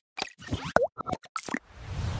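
Animated-logo sound effects: a quick run of short pops and clicks, one with a bending pitch, then a whoosh that swells near the end.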